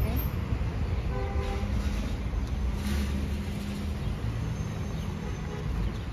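Steady low rumble of a car and road traffic, with a short horn-like toot about a second in.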